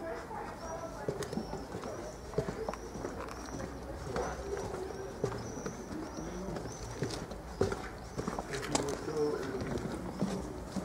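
A bird calling over and over, a short high chirp repeated roughly every half second, with people's voices and a few light clicks underneath.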